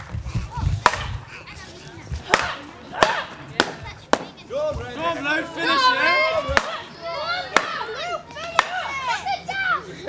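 Swords striking shields in gladiator combat: about eight sharp knocks at irregular intervals, most close together in the first half, with voices around them.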